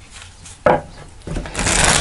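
A deck of tarot cards being shuffled by hand on a cloth-covered table: a sharp tap about two-thirds of a second in, then a rushing flutter of cards that builds and is loudest near the end.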